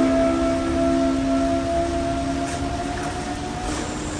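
The last held chord of background rock music ringing out, a few steady tones slowly fading away.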